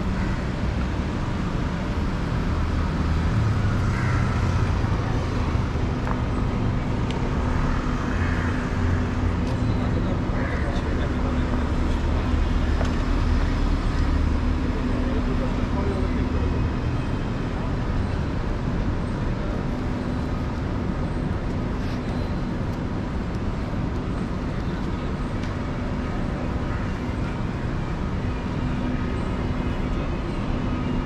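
Urban street traffic noise: a steady mix of vehicle engines, heavier and lower for the first half, with a constant low hum underneath.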